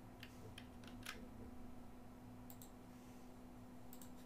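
Near silence with a faint steady hum, broken by a few faint, sharp computer mouse clicks, two in quick succession about two and a half seconds in.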